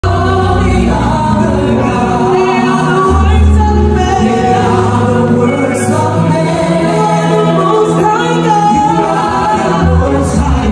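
Gospel choir singing with a band, sustained bass notes shifting under the voices.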